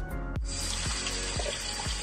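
Kitchen tap water running in a steady stream into a white plastic electric kettle through its spout, starting about half a second in, with background music underneath.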